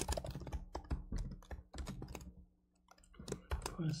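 Typing on a computer keyboard: quick runs of keystrokes, a pause of under a second about two-thirds through, then a few more keys.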